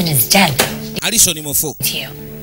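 A man talking over background music that holds a steady low drone.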